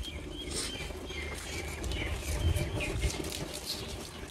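Small birds chirping in many short, high calls, over a steady low rumble on the microphone.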